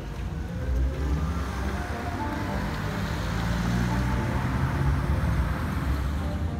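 Road traffic noise, with a vehicle rush that builds about a second in and stays strong through the middle, under background music.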